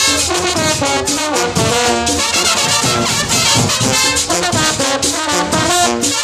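Marching band brass playing live: trumpets, trombones and a sousaphone together over a steady beat.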